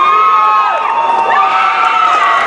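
Crowd shouting and cheering, several voices holding long drawn-out yells; a fresh yell rises a little past halfway.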